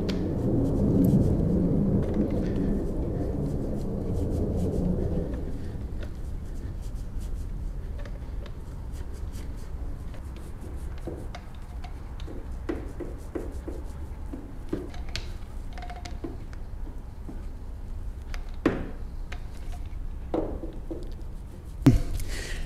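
Quarter-inch-nap paint roller rolling paint onto fibreglass, a low rubbing sound loudest in the first few seconds. Scattered small clicks and knocks from handling the roller and tray come later, with one sharper knock near the end.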